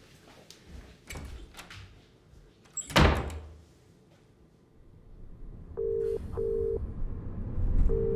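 A door shuts with a single thud about three seconds in, after a few faint knocks. Near the end a British telephone ringing tone is heard in the earpiece, a double ring twice, over a low hum.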